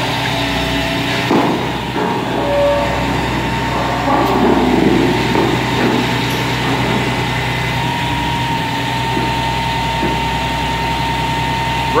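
Heavy work-truck engines running steadily while the trucks' hydraulic grapple booms lift and swing a long rail string. A steady thin whine joins about halfway through.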